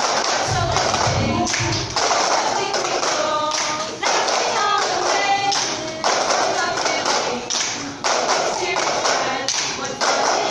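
Many plastic cups tapped and knocked on a tiled floor in unison, a group cup-game rhythm that repeats in phrases of about two seconds, over singing voices.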